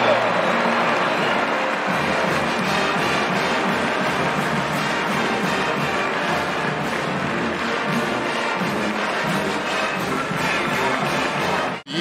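Stadium crowd cheering after a touchdown while a brass band plays. The sound cuts off abruptly just before the end.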